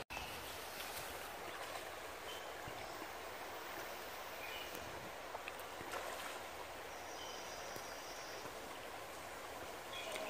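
Faint, steady flow of a shallow stream running over stones, with a few brief, faint high chirps over it.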